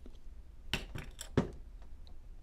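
A quick run of about five light clicks and clinks, beginning a little under a second in, from a steel piston pin and a can of assembly lube being handled on a workbench while the pin is coated with lube.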